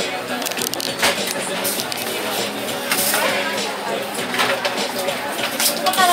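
Busy shop ambience: people talking indistinctly over background music, with several short, sharp rustles or clicks scattered through it.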